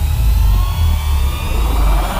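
Cinematic trailer sound design in a dramatic title soundtrack: a heavy deep bass rumble under a whoosh that rises steadily in pitch.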